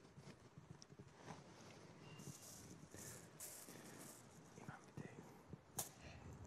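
Near silence with faint handling noise: a crumpled plastic bottle rustling in short hissy bursts in the middle, and a sharp click near the end.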